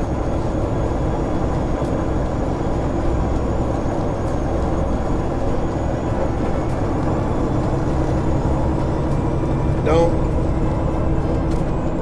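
Steady engine and road noise inside the cab of a moving semi truck, with a brief burst of voice about ten seconds in.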